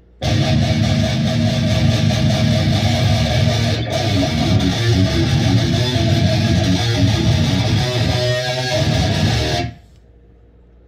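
Electric guitar played through a Line 6 Spider V 240HC amp head and a Marshall speaker cabinet, riffing and chugging. It starts abruptly a moment in and stops abruptly near the end.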